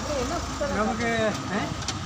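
Men's voices in conversation, over the running engine of street traffic, with a motor scooter coming up the road.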